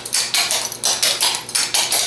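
Clogging shoes with metal taps striking a hard floor in a quick, even run of steps, about six or seven sharp taps a second.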